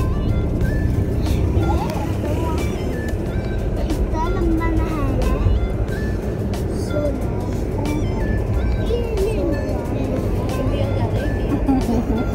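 Steady low road and engine rumble of a moving car, with music playing and voices over it.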